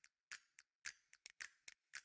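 Faint, sharp clicks in an uneven rhythm, about four a second, each with a short fading tail.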